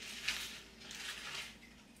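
Dry baby spinach leaves rustling softly as they are spread by hand, in a few light patches.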